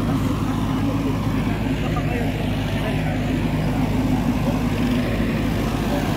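An engine running steadily, a constant low drone, with the murmur of many voices behind it.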